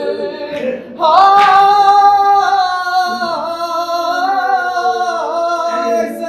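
A noha reciter's voice holding one long sung note from about a second in, the pitch wavering and dipping down and back up a few times.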